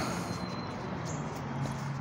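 Steady outdoor background noise: an even hiss with a steady low hum under it, and a faint thin high whine that fades out about a second in.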